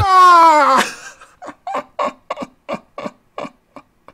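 A man's loud, high-pitched exclamation that falls in pitch over the first second, followed by a run of short, breathy laughs, about four a second.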